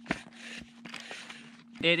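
Gloved hands handling a blue plastic 10-inch water filter housing: a click just after the start, then scraping and rustling, over a faint steady hum.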